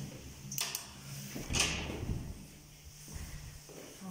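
A door in a tiled entrance hall being handled: a click, then a louder clack with a dull thud about one and a half seconds in, and a faint knock near the end.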